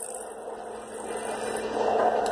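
A fidget spinner spinning on its bearing, a soft whirring hiss that grows louder near the end.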